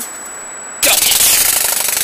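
Wound-up flapping-wing toy bird released: its wings beat in a loud, very rapid rattle that starts suddenly about a second in and slowly weakens as it flies off.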